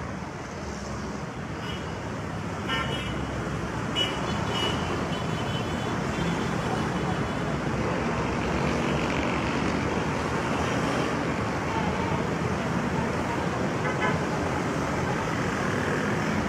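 Steady street traffic noise, slowly growing a little louder, with a few brief faint sounds rising above it now and then.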